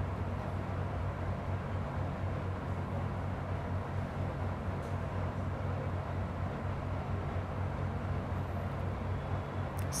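Laminar airflow cabinet's blower running steadily: an even rush of air with a low motor hum.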